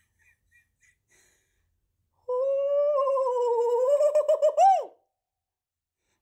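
A woman's voice giving a long, high wordless note of delight, held for about two and a half seconds and ending in a quick warble before it cuts off.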